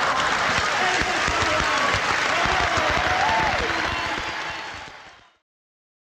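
Audience applause, a dense steady clatter of clapping with a few voices calling out over it, fading out about five seconds in.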